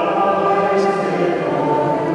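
Slow hymn singing in a large, echoing church, the voices holding long notes and moving slowly from note to note.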